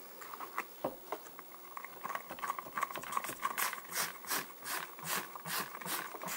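Trigger spray bottle of Lime-A-Way cleaner squirting quickly over and over into a plastic tray to fill it, about two or three short hissing squirts a second. Before the run of squirts there are a few faint clicks of the nozzle and trigger.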